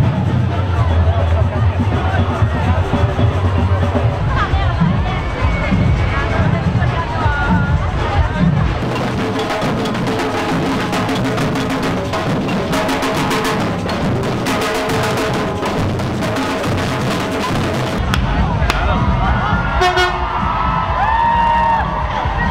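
Street parade sound: loud music with a heavy bass beat, then a street drum band beating large drums with sticks in rapid, dense strikes. Near the end the sound changes to crowd noise with sliding whistle-like tones.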